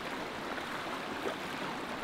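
Steady rush of creek water flowing through a hole in a beaver dam.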